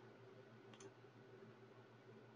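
Near silence: faint room hum, with one faint click a little under a second in.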